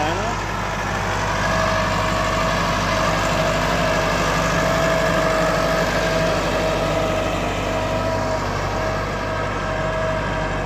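Massey Ferguson 385 tractor's diesel engine running steadily while it pulls a laser land leveler bucket across the field, a deep hum with a steady whine over it.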